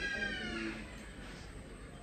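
A single long, high-pitched cry that rises and then falls, trailing off well before the end.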